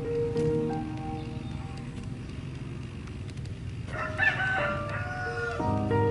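Soft background music with long held notes; about four seconds in, a rooster crows once.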